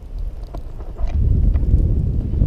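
Wind buffeting the microphone of a camera on a moving bike ridden over a dirt track: a low rumble that grows louder about a second in, with a few faint clicks.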